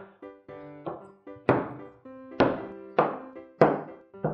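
Chef's knife chopping through blocks of melt-and-pour soap base and landing on a wooden cutting board: a series of sharp thunks, about four of them in the last two and a half seconds. Background music plays under the chopping.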